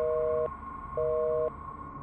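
Telephone busy signal in the handset: a two-note tone beeping on for half a second and off for half a second, twice. The call is not getting through.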